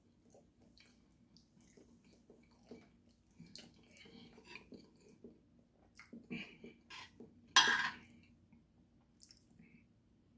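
Close-up eating sounds: chewing and small mouth noises, with a spoon and fork clinking and scraping against a ceramic plate of fish in broth. One short, sharp noise, the loudest in the stretch, comes just under eight seconds in.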